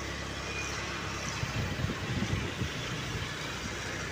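A small vehicle engine runs steadily under road and traffic noise, as from a scooter being ridden.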